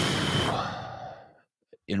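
A man's sigh into a close microphone, loud at first and fading away over about a second and a half.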